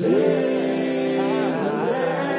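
Layered singing voices holding a sustained chord with no drums, one voice wavering through a short melodic run about one and a half seconds in: the vocal outro of a hip-hop track.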